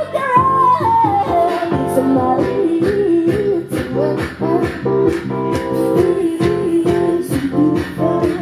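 Live pop band music with a woman singing lead, her voice gliding down from a high note in the first couple of seconds and then holding wavering notes, over a steady drum beat and guitar.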